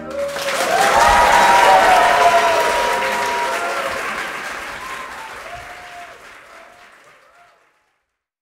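Audience applauding with cheering voices as soon as the final chord of the string quintet ends. It is loudest between one and two seconds in, then fades out to nothing near the end.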